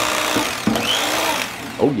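Electric carving knife running as it slices into a roast turkey, a steady motor buzz that stops about a second and a half in.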